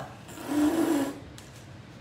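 Blue painter's tape being pulled and peeled, a short buzzy rasp lasting under a second, starting about a third of a second in.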